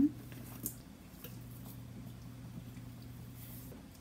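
Faint rustling and small ticks of dried tarragon being shaken from a spice jar into a saucepan, over a low steady hum that drops out briefly about a second in and stops near the end.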